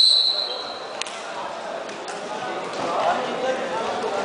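Referee's whistle: one long, high blast that fades out within the first second, starting the wrestling bout. Then the crowd's murmur in the sports hall, with a few sharp knocks.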